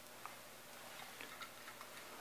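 A few faint, irregular light clicks of die-cast toy cars being handled and picked up by hand, over quiet room tone.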